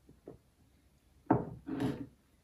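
Ceramic mug set down on a wooden tabletop: a single knock a little over a second in, then a brief scraping slide as it is pushed into place.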